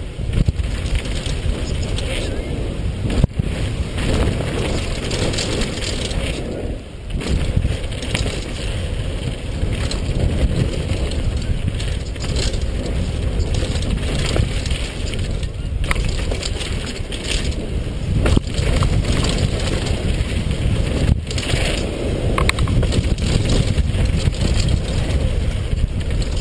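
Mountain bike descending a dusty dirt trail at speed: wind buffeting an action camera's microphone over a continuous rumble of tyres on dirt and the bike rattling over bumps, with a few sharp knocks from hard hits.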